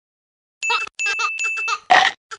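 A short intro sound effect for an animated logo: a quick series of bell-like rings, starting about half a second in, with a louder final ring at the end.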